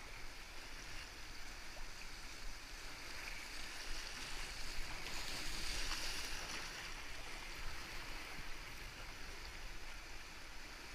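Rushing whitewater of the McKenzie River's rapids, heard close to the water surface from a kayak: a steady hiss of churning current that swells a little louder around the middle.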